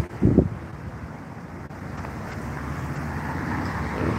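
Wind rushing over a phone microphone outdoors: a steady low rush that slowly grows louder, with one brief louder burst just after the start.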